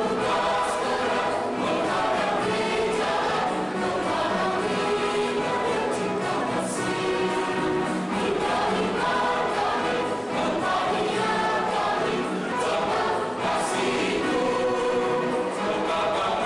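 Mixed choir of men's and women's voices singing a sacred piece in parts, with held chords that move from note to note.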